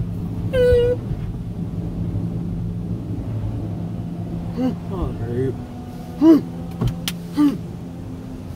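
Automatic touchless car-wash spray heard from inside the car: a steady low hum with water sheeting over the windshield. A child's voice rises over it, one held note near the start and several short calls in the second half.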